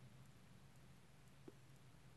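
Near silence: room tone with a faint low hum, and one faint click about one and a half seconds in.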